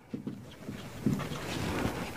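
Marker pen rubbing across a whiteboard in short strokes as words are written, over a low steady hiss.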